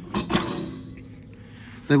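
MORryde folding aluminium RV entry steps being handled: a few sharp metal clacks in the first half second, then a short fading ring.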